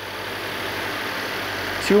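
The 2.4-litre turbocharged flat-four engine of a 2021 Subaru Outback XT idling steadily and smoothly, heard from above the open engine bay.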